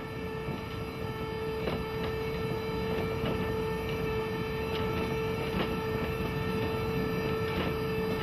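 Electric vehicle running in a metro station: a steady electric whine over a continuous rumble that grows slightly louder, with a few faint clicks.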